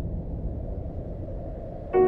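Trailer soundtrack: a low rumble that slowly fades, then near the end a sudden loud sustained chord hit that rings on.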